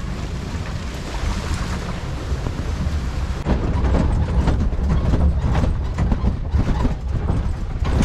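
Vehicle driving on a rough dirt track, a heavy low rumble with wind buffeting on the microphone. About three and a half seconds in, frequent knocks and rattles of the vehicle jolting over the uneven, rocky road take over.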